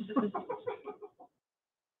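Laughter in a string of short, quick bursts that fades out about a second in, followed by silence.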